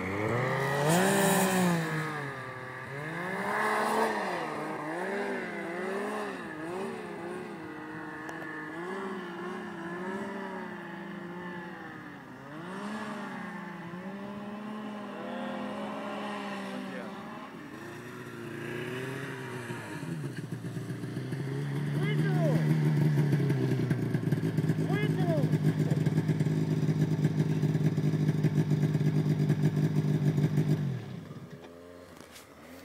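Snowmobile engine revving up and down again and again as a sled climbs a snowy slope. About twenty seconds in, a louder, nearer snowmobile engine comes in, running at a steady pitch.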